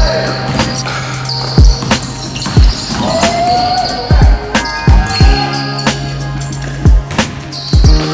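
A basketball bouncing on a hardwood gym floor: about eight heavy thumps at uneven intervals, over background music with a steady bass note.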